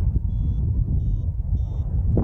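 Flight variometer beeping in short high tones, three beeps in about two seconds, signalling the paraglider is climbing in lift. Underneath, heavy wind buffeting on the microphone from the airflow in flight is the loudest sound.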